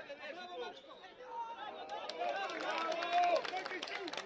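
Several people at a youth football match shouting and chattering at once, with no single clear voice. The voices grow louder about halfway through, with one loud call near the end.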